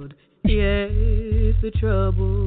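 A cappella gospel singing: voices in close harmony over a deep bass part holding long low notes. There is a short break just after the start before the voices come back in.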